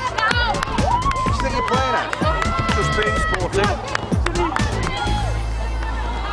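Background music mixed with sideline spectators shouting and cheering at a football match.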